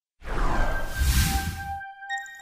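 Whoosh sound effect of a logo animation: a swelling rush of noise with a deep low end that starts about a quarter second in and stops suddenly just before the end. Held chime notes of the logo jingle enter under it in its second half.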